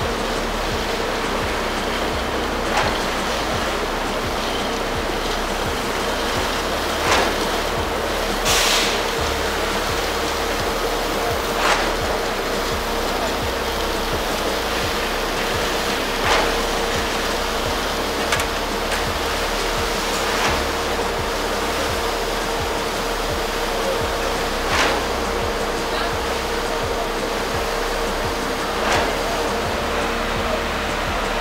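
Steady machine hum over a constant rushing noise, with a sharp knock every few seconds, from concrete-pouring work at reinforced-concrete formwork.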